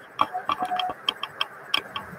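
A quick, uneven run of about ten sharp clicks and knocks, with a short squeak in the first second.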